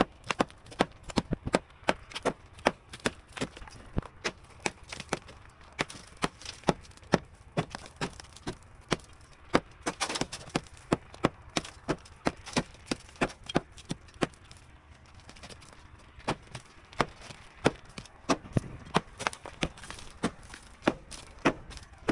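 Hammer striking a plastered wall again and again, chipping out the edge of a window opening: sharp knocks about two a second, with a short lull about two-thirds of the way through.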